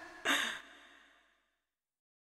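A short breathy vocal sound at the close of a dance track, starting about a quarter second in, its pitch sliding down as it fades out within about a second.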